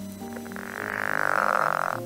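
Recorded call of a pickerel frog (Lithobates palustris): one drawn-out croak that swells from about half a second in and stops near the end. Quiet background music runs underneath.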